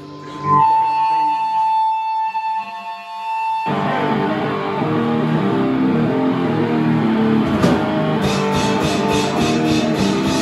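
Live heavy rock band: a single sustained electric guitar note rings on its own, then, a little under four seconds in, the full band comes in at once with distorted guitar and a drum kit.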